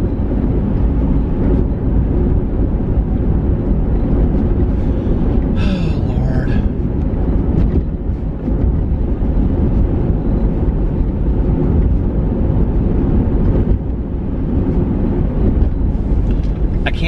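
Steady low road rumble of a car's engine and tyres, heard from inside the cabin while driving. A brief higher-pitched sound cuts in about six seconds in.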